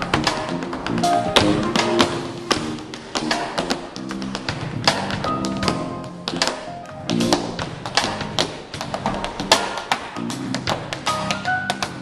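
Tap shoes striking a wooden stage in fast, irregular rhythms of sharp clicks, with a live band of drum kit, piano and bass guitar playing along underneath.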